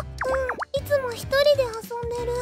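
Voice-acted dialogue, a woman's short question and a child's answer, over light background music, with a brief cartoon pop effect that swoops in pitch early on.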